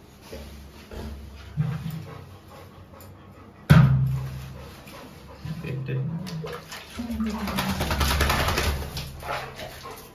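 A Labrador making low vocal sounds during its bath, with one sudden loud one about four seconds in. Water is poured over its wet coat from a mug in the later seconds.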